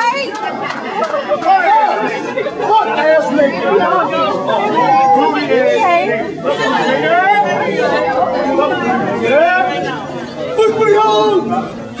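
Many men's voices talking and shouting over one another, loud and unintelligible crowd chatter.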